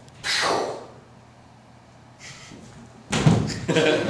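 A short hissing burst just after the start, a quiet pause, then a heavy thud on the stage floor about three seconds in, followed by audience noise.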